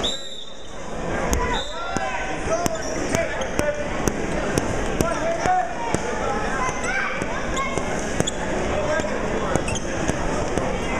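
Crowd voices and shouting in a gymnasium during a wrestling match, with a referee's whistle blowing twice in the first two seconds and short sharp knocks every half second or so.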